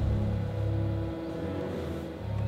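Animated cartoon soundtrack: music with long held notes over a low vehicle rumble, which drops away about a second in.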